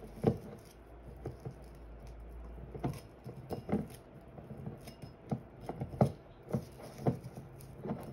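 Light handling noises: irregular small taps and clicks as hands fit a satin ribbon bow around the neck of a small glass juice bottle.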